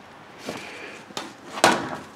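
Handling noise from an umbrella being closed: a light knock, a sharper click, then a louder short clatter near the end.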